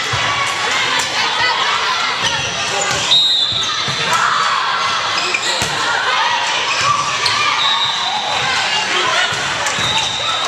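Volleyball gym sound: constant crowd chatter in a large hall, with many sharp ball strikes and bounces. A short high steady tone comes about three seconds in, and a longer one near the end.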